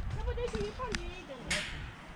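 A person's voice, talking or calling, with a sharp tap or click about one and a half seconds in.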